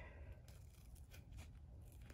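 A few faint, short snips of sharp scissors trimming through embroidery vinyl and tear-away stabilizer.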